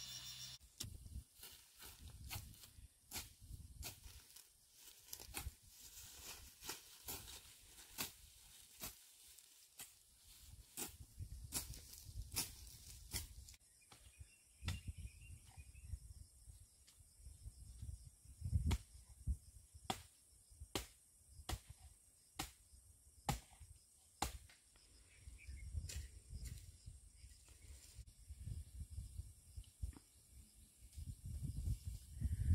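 Faint outdoor ambience: a steady high insect chirring, broken by irregular sharp clicks and soft low thumps from a person walking through grass with a handheld camera.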